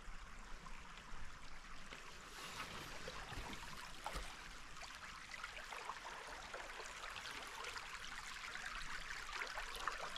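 Shallow stream water burbling and trickling over rocks and branches, faint and steady, growing a little louder near the end.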